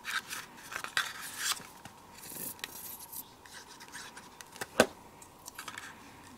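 Paper being handled: die-cut paper flowers and a butterfly slid and pressed onto a card stock card by fingers, with light rustling and rubbing and small clicks. One sharp tap a little before the end.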